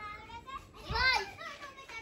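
Young children's high-pitched voices as they play, with one loud call about a second in.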